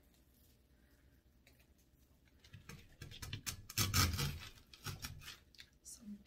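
Artificial flower picks and their plastic leaves being handled and pushed into a floral arrangement: a run of small rustles, scratches and clicks starting about halfway through, after a quiet start.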